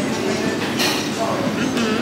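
Busy restaurant room noise: a steady rumbling bed of sound with indistinct voices talking over it.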